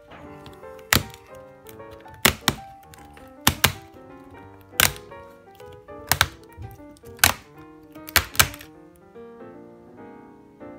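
About ten sharp snaps, some in quick pairs, spaced a second or so apart, as a riveted MacBook Air keyboard is pried up off its top case and its plastic rivets break free one after another. Background music plays under them.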